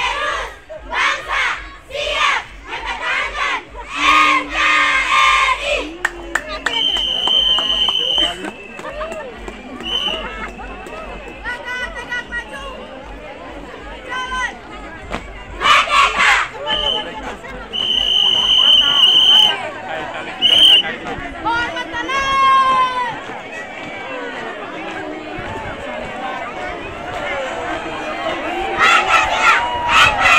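A troop of schoolgirls shouting marching chants in unison over a crowd of onlookers, with several short shrill whistle blasts from the marching leader about a third of the way in and again about two-thirds of the way in.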